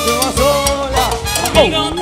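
Salsa band playing loudly: a melody line over steady Latin percussion.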